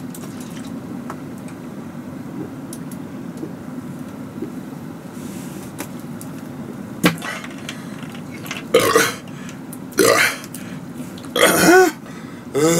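A man's harsh throat and breath noises, three short loud bursts in the second half, as he reacts to the burning heat of 30x-spicy curry. A single sharp click comes about seven seconds in, over a low steady hum.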